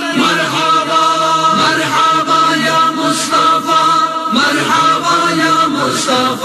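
Voices chanting an Urdu devotional naat in long held, gliding notes, without instruments.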